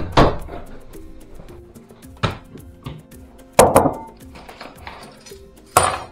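Background music with held notes, broken by several loud sharp knocks: a double knock at the start, then single ones about two seconds in, a double one past the midpoint and one near the end.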